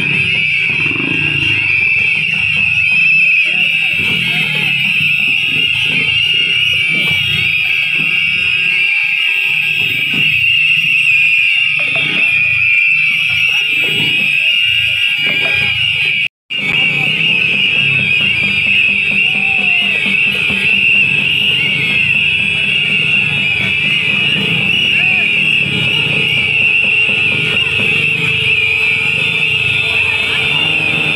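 A crowd blowing whistles together nonstop: many shrill, wavering whistle tones merge into one continuous chorus over crowd murmur. It cuts out for a split second about halfway through.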